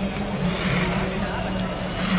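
A steady engine drone with a hum that wavers slightly in pitch, and people talking faintly underneath.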